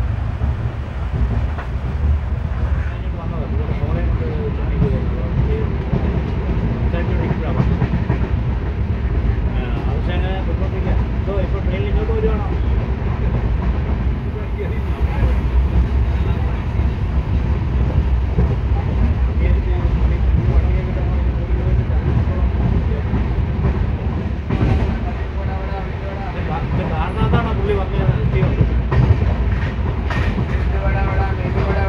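Indian Railways passenger express in motion, heard from an open window of one of its coaches: a loud, steady low rumble of wheels on the rails with air rushing past.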